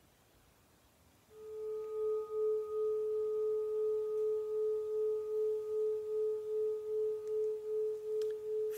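A meditation chime rings out about a second in, one clear sustained tone with an even, slow wavering, sounding the end of the silent sitting.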